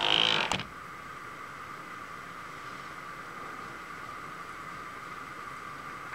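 Milling machine running with a steady high-pitched hum, after a brief creak in the first half-second.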